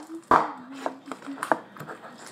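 A few light knocks and scrapes as leftover slime is cleaned out of a bowl, the first one the loudest, about a third of a second in.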